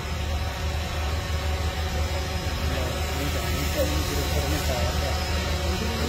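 A steady low hum runs under faint, indistinct voices in a large hall.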